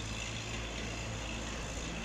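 Steady outdoor background rumble with a low continuous hum, like distant traffic, and no distinct events.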